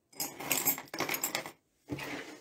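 Metal costume jewelry jingling and clinking as pieces are picked over by hand on a table, a dense run of small clinks for about a second and a half that then stops.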